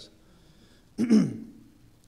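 A man clears his throat once, about a second in: a short burst that drops in pitch.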